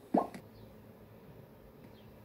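A short cartoon pop sound effect with a quick upward glide in pitch, played through a television speaker.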